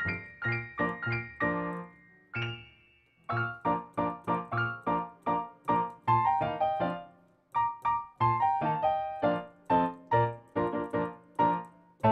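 Solo piano playing: a quick run of struck notes and chords, with a held chord left to ring and die away about two seconds in and a short break near the middle before the notes resume.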